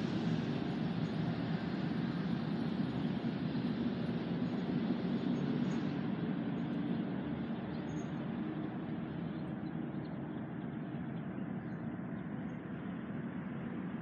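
Steady rumble of distant road traffic, with no distinct events, easing slightly in level toward the end.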